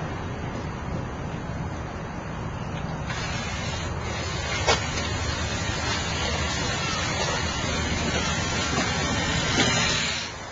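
Home-built jet engine running: a steady rushing roar that grows louder about three seconds in, with one sharp click near the middle.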